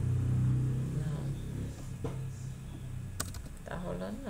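A low, steady rumble that fades over the first two seconds, then a few computer keyboard keystroke clicks near the end as text is deleted.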